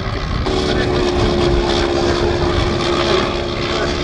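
Sopwith Triplane's rotary engine droning in flight overhead, a steady hum that sets in about half a second in and holds.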